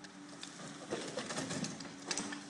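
Demolition excavator's grab working brickwork at the top of a wall: a steady engine hum, with a dense run of crunching and clattering knocks from about a second in as masonry breaks and rubble falls.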